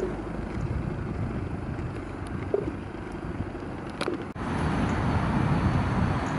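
Steady hum of road traffic from a busy road, a little louder in the last two seconds.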